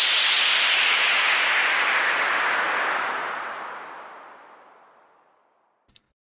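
Hissing whoosh sound effect for a smoke transition. It is loud at first, then fades out over about five seconds, sinking lower as it dies away.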